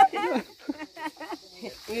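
A woman laughing and talking, trailing off after half a second; voices return near the end. A faint steady high insect buzz runs underneath.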